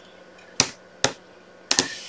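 Plastic blade head of a sliding paper trimmer, fitted with a scoring blade, clicking as it is pushed along the rail to score cardstock. Four sharp clicks, the last two close together near the end.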